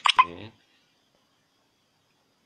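A man's voice: a brief clipped utterance with two sharp attacks in the first half second, then near silence with only faint room tone.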